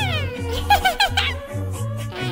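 Cartoon background music with a steady bass line, overlaid by high-pitched, squeaky cartoon vocal sounds: a falling squeal at the start, then a quick run of short chirpy notes about a second in.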